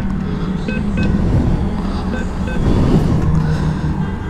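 ATM keypad beeping as a PIN is keyed in: about four short beeps, a pair about a second in and another pair a little after two seconds. A steady low rumble of street traffic runs underneath.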